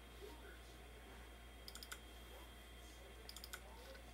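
Near silence broken by two short runs of faint clicks from the Apple Lisa 2 workstation at work, the first a little under two seconds in and the second about a second and a half later.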